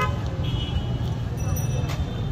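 Outdoor city ambience: a steady low rumble of road traffic, with voices of people talking in the background and a brief high-pitched toot about half a second in.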